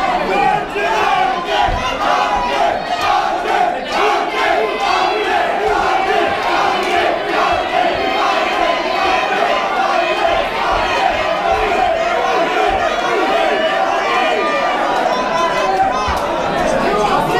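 Crowd of fight spectators shouting and cheering, many voices overlapping in a steady din as the fighters grapple.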